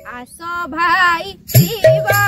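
A young woman's voice singing a short kirtan phrase alone, the melody wavering and ornamented. Backing music with a steady beat comes back in about a second and a half in.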